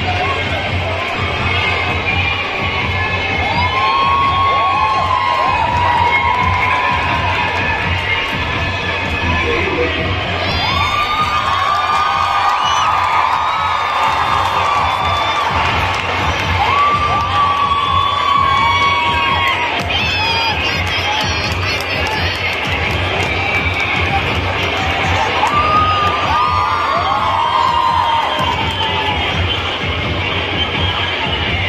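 A large crowd of schoolchildren cheering and shouting, with loud swells of high shouts several times.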